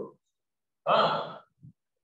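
A man's voice: one short breathy vocal sound about a second in, with silence around it.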